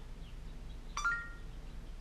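A short electronic beep from a Samsung Galaxy Gear smartwatch about a second in: a click, then a brief two-tone chime over faint room hum, as S Voice takes in a spoken command.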